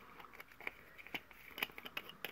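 Faint, scattered small clicks and taps of craft tools and supplies being handled and set down on a tabletop.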